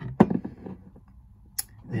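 A glass perfume bottle being lifted off a wooden shelf: one sharp knock about a quarter second in, a little handling noise, then a brief high click near the end.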